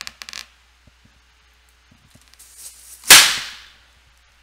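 A red latex balloon bursting with one very loud bang about three seconds in, as scissors cut near its knot, the cut meant to let it deflate quietly. A few small snips and clicks of the scissors on the rubber come before it.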